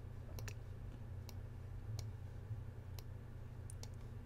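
Computer mouse clicking about seven times at uneven intervals, some in quick pairs, as right-clicks add curve nodes to a shape outline. A faint steady low hum runs underneath.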